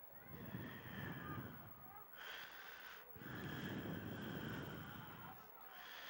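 Two faint, low rushes of noise on the microphone, each about two seconds long, over faint distant sounds from the field.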